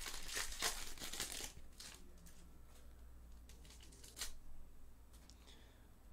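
Shiny foil trading-card pack wrapper crinkling and tearing as it is pulled open, busiest in the first second and a half, then only a few faint rustles and clicks as the cards are slid out.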